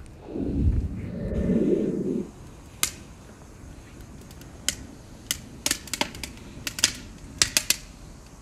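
Wood fire crackling, with sharp irregular pops that come more often toward the end. For the first two seconds or so there is a low rumbling noise instead.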